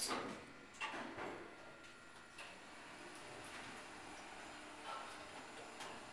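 Otis Gen2 lift: the two-speed sliding doors shut with a knock at the start and another just under a second in, then the car runs down quietly, a faint steady hiss with a few light ticks.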